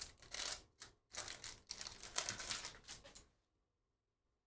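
Foil wrapper of a Panini Prizm Premier League hobby pack crinkling in a run of short rustling bursts as the pack is torn open and the cards slid out. It stops about three seconds in.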